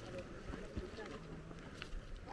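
Wind rumbling on the microphone on an open hillside trail, with faint, indistinct voices of other hikers.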